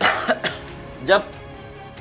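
A man coughs once, a short harsh burst at the very start.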